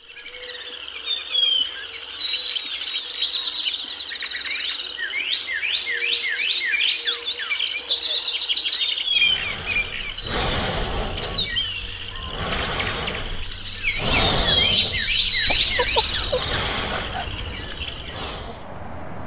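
Several birds chirping and singing at once, quick trills and whistled sweeps overlapping throughout. From about halfway, a low rumble and a few brief swells of noise join the birdsong.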